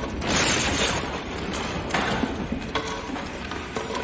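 Film sound effects of a semi truck bursting through a fireball: a loud rush of flame and debris about a third of a second in, then continuous noise full of small clicks and clatters.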